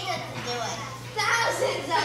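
A child's voice speaking lines in a stage play, over a steady low hum.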